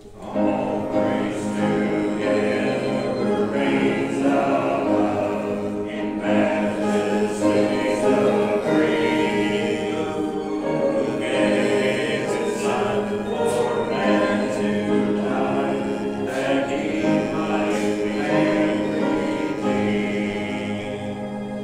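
Congregation singing a hymn together, the singing coming in just after the start.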